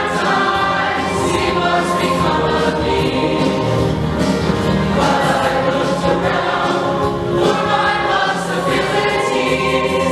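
Freshman mixed show choir, boys' and girls' voices together, singing a song loudly and without a break.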